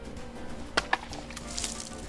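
Two sharp clicks about a fifth of a second apart: a small thrown plastic game ball striking something hard and bouncing off, over faint background music.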